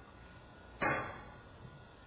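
A single sharp knock about a second in, dying away over about half a second.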